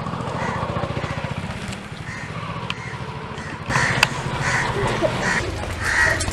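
Crows cawing now and then over a steady low hum, the calls getting louder in the second half.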